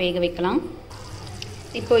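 A voice speaking briefly, then a quieter stretch of faint, steady background noise before the voice starts again near the end.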